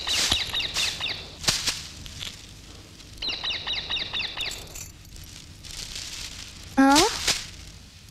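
Birds chirping outdoors in two quick trains of short, repeated high notes, over soft swells of noise. Near the end comes a brief, loud rising call, the loudest sound here.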